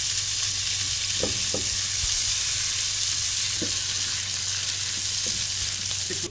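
Boiled potato pieces and onion-tomato masala sizzling steadily in hot oil in a frying pan on a high flame, stirred with a spatula, with a few short strokes of the spatula against the pan.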